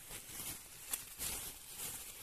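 Faint rustling handling noise with a single light click about a second in, as new moped piston kits are handled.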